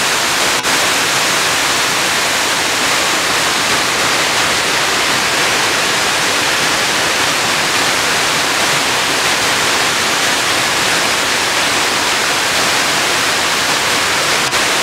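Moramo Waterfall's tiered cascades: a loud, steady rush of water pouring over broad stepped rock ledges.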